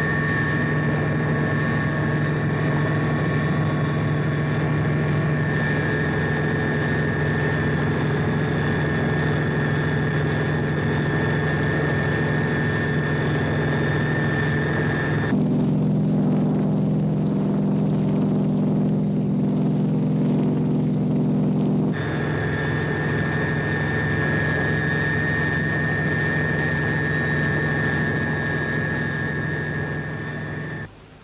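Steady drone of a tandem-rotor helicopter's engine and rotors, with a constant whine on top. About halfway through the sound turns deeper and duller for several seconds before the whine returns.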